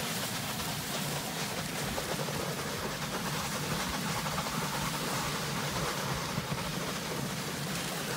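Steady hiss of a dog sled sliding over snow, the sled's runners scraping along the packed surface as it is pulled.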